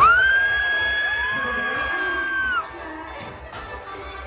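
Two voices hold a long, high shrieked note together in a crowded club. The higher voice starts at once and the lower one joins about half a second later; both cut off after about two and a half seconds. The deep beat of the backing music drops out meanwhile, and crowd noise carries on after the voices stop.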